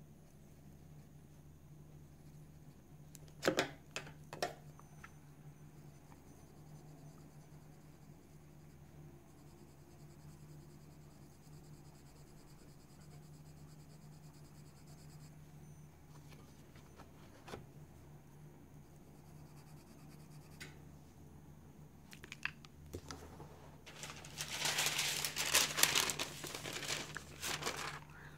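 A sheet of tracing paper crinkling loudly for the last four seconds or so as it is handled and laid over a colouring-book page. Before that there is only a low steady hum, with two sharp clicks a few seconds in.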